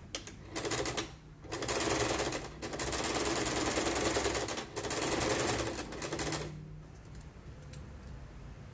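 Janome domestic sewing machine stitching through nylon webbing strap, a fast needle clatter: a short burst about half a second in, then a longer run of stitching for about five seconds with two brief pauses, stopping well before the end.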